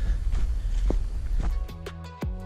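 Footsteps on the forest floor over a low rumble on the microphone, then background music with plucked notes begins about a second and a half in.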